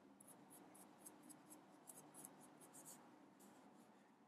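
Faint scratching of a Sharpie felt-tip marker on paper: short shading strokes repeated about three times a second.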